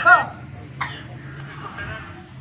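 A man's voice, then a short, harsh cough about a second in.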